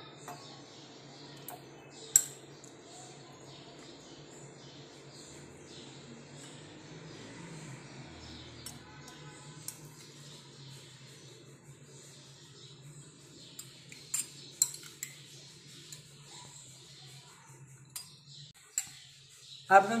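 A metal spoon scooping strawberry jelly cubes out of a glass bowl and into wine glasses, clinking sharply on the glass a few times, loudest about two seconds in, with a quick pair later on. A steady low hum runs underneath.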